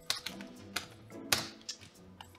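Keys of a desktop calculator being pressed in quick, irregular clicks, the sharpest about a second and a half in, over background music.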